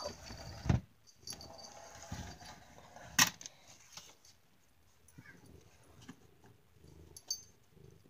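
Handling noise as something is pulled out to get pet food: a low thump just under a second in, a sharp knock a little after three seconds, and quiet rustling between.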